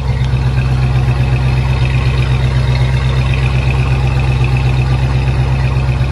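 1967 Chevrolet C10 pickup's engine idling steadily, heard at its new dual exhaust tailpipes: an even, low exhaust note.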